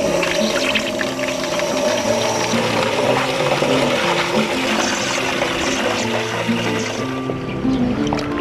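Water running steadily from a tap into a metal basin as vegetables are rinsed, a continuous hiss and splash, under background music with held notes.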